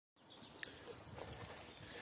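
Faint footsteps of someone walking up over grass and paving, soft irregular steps against a quiet outdoor background.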